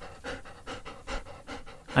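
A dog panting rapidly and evenly, about five short breaths a second.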